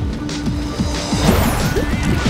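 Cartoon soundtrack music with a held note, under a rapid run of short, low sound effects that each drop in pitch, several a second.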